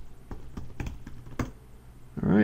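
Computer keyboard keys clicking as a sudo password is typed and entered at a terminal prompt: several short, irregularly spaced keystrokes, the loudest about one and a half seconds in.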